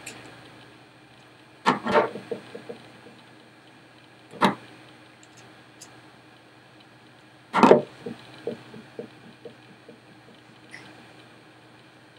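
A few sharp clicks and light metallic ticks from a screwdriver working the small screw of a compound bow's cable clamp, with the loudest click about two thirds of the way through. The screw is being tightened only lightly, so that the timing cable can still slip.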